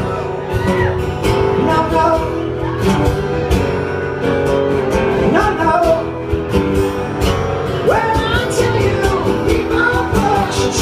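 Live acoustic rock song: two acoustic guitars strummed together under a man's lead vocal.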